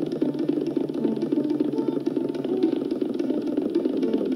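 Tabla playing a fast, dense run of strokes over a repeating melodic accompaniment (lehra) on sitar.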